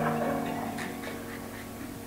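Soft background music of held, sustained chords, slowly fading away.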